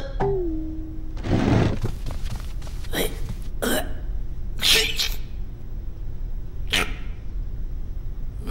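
Cartoon sound effects: a short held hum near the start, a brief rushing noise, then about five short, sudden little sounds (small grunt- or hiccup-like noises and clicks) spaced about a second apart.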